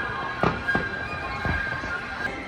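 Fireworks bursting, several sharp bangs spaced unevenly, over a bed of sustained music.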